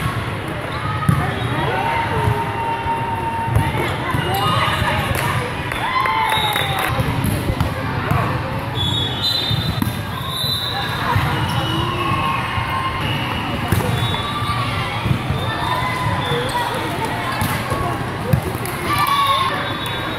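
Volleyball hall din echoing in a large indoor space: many players and spectators calling out and chattering over one another, with a few sharp ball strikes standing out.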